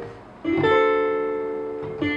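A guitar-sounding chord played from a keyboard into music software, struck about half a second in and left to ring and fade slowly, with the next chord starting at the very end.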